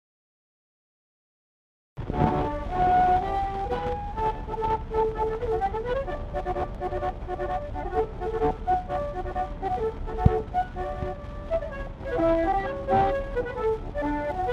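Two concertinas playing a Swedish parade march in duet, heard from a 1910 acoustic 78 rpm shellac record, with steady surface hiss, rumble and crackle. The music starts suddenly about two seconds in, after silence.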